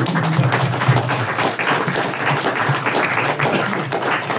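Small audience applauding at the end of an acoustic song, a dense patter of hand claps with a low note lingering under it for about the first second.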